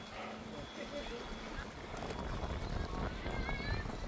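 Seaside ambience: a steady low wind rumble on the microphone, with small waves lapping against the rocky shore.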